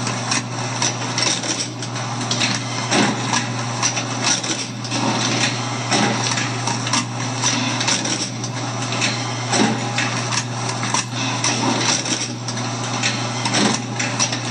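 Bourg SBM booklet maker running a test cycle. A steady motor hum runs throughout, overlaid by repeated clacks and knocks as the stitcher, folder and trimmer work through the sets.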